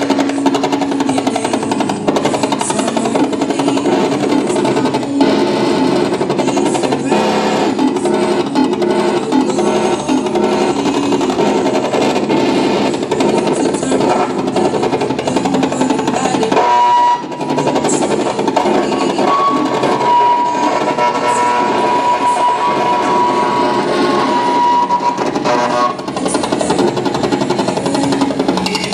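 Loud live music played in a small room, a dense and noisy wall of sound from instruments. Past the middle, a single high note holds for several seconds over it.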